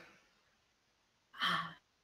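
A person's short, breathy sigh about one and a half seconds in, after a voice trails off into silence.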